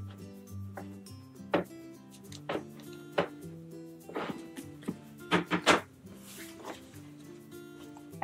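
Background music runs throughout, over a series of sharp clicks and knocks with a brief rustle. These come from hands working fabric and stabilizer into a plastic embroidery hoop and pressing it down; the handling noises are the loudest sounds, clustered around the middle.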